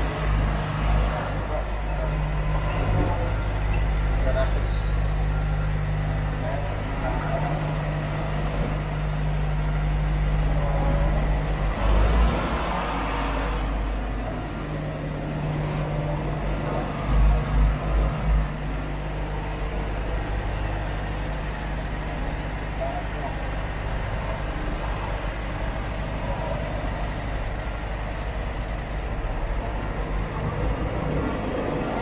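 Semi-truck's diesel engine running slowly, a steady low hum heard from inside the cab. A brief hiss comes about twelve seconds in, and a few short thumps about seventeen seconds in.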